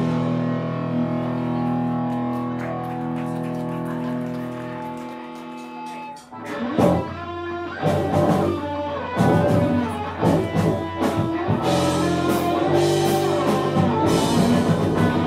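Live rock band with electric guitar: a held chord rings out and slowly fades for about six seconds, then the band comes back in with drums and guitar.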